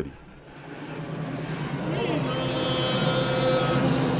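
A steady rushing noise that fades in and grows louder over the first two seconds, with several held tones joining it about two seconds in. It is the soundtrack under an old black-and-white film's opening credits.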